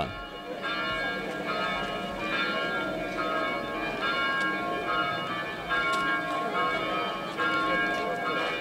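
Church bells ringing for a funeral, about one stroke a second, each stroke ringing on into the next.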